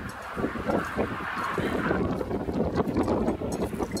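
Wind blowing across the microphone: an uneven rushing and buffeting that gets louder about half a second in.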